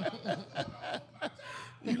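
Men chuckling softly, a few short, broken laughs.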